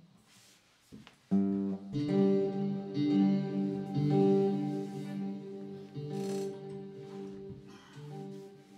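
Resonator guitar played through its pickup with heavy reverb and delay: chords are struck a little over a second in and a few more times over the next few seconds, then ring on in long, slowly fading trails.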